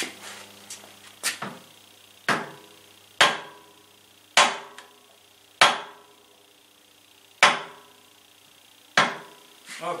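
Seven sharp knocks, spaced unevenly about a second apart, struck against the cast-iron flywheel of a 1920 International Harvester Type M hit-and-miss engine, each with a short metallic ring. The flywheel is being knocked along the crankshaft to take up half of its eighth-inch end play, before the gib keys are set.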